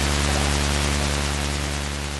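Moog analog synthesizer sounding a low, steady drone with hiss layered over it, beginning to fade near the end.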